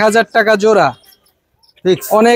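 Speech only: a man talking for about the first second, then a short pause before the talking starts again near the end.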